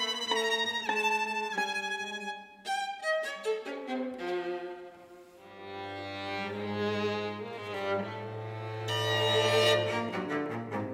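String quartet of two violins, viola and cello playing. Quick, changing notes in the upper strings thin out and quieten just before the middle, then the cello holds a long low note under sustained chords that swell near the end.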